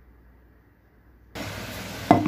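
Water from a kitchen tap starts suddenly a little over a second in and runs in a steady stream into the sink.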